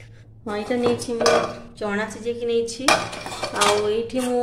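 Stainless-steel pot lids and containers clanking as they are handled, lifted and set down, several knocks each followed by a brief metallic ring.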